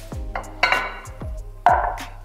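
Background music with a steady beat. Over it, a glass baking dish is set down on a wooden cutting board: a couple of sharp knocks with a short ring, one a little after half a second in and one near the end.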